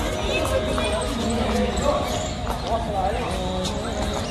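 Outdoor ambience of a busy monument courtyard: background voices of other visitors, with repeated short taps of footsteps on the stone paving.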